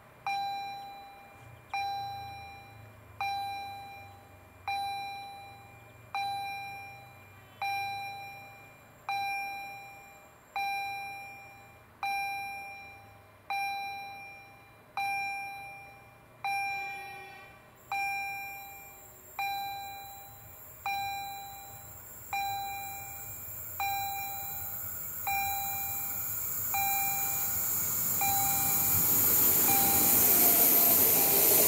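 Level-crossing warning bell striking about once every second and a half, each strike ringing out and fading, the sign that the crossing is closed for an oncoming train. Over the last several seconds the noise of the approaching electric train rises under the bell.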